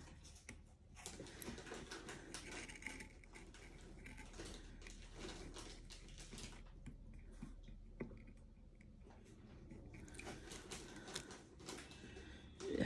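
Faint, irregular small clicks and rustling from hand work: metal tweezers tapping and paper strips being pressed onto a tin.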